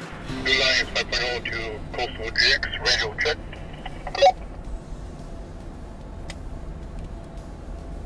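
Voice chatter over a handheld two-way radio for about four seconds, ending in a short sharp tone. After it comes the steady low hum of the GX460 driving on sand, heard inside its cabin, with a single click near the end.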